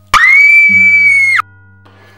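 A girl's shrill scream, held on one high note for just over a second, starting and cutting off abruptly, over a faint low background drone.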